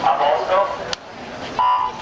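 Electronic start signal for a swimming race: one short, steady beep about a second and a half in, the signal for the swimmers to dive off the blocks. Before it come a brief voice call and a sharp click, then a moment of hush.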